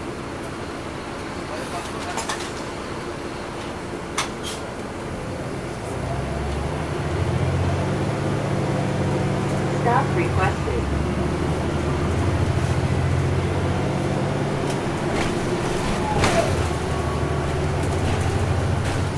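Inside a NABI 40-SFW diesel transit bus: the engine idles quietly at first. About six seconds in, the Caterpillar C13 engine pulls hard as the bus moves off and accelerates. The engine note drops briefly around ten seconds and again near sixteen seconds, as the ZF automatic gearbox shifts up.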